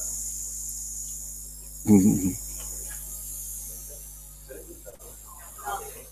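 Hiss and electrical hum from a conference sound system, starting suddenly as a microphone is switched on and slowly fading. A short loud spoken word cuts in about two seconds in.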